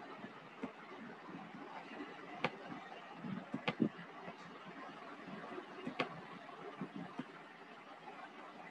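Computer mouse clicking: about five sharp single clicks, a second or more apart, over a steady background hiss.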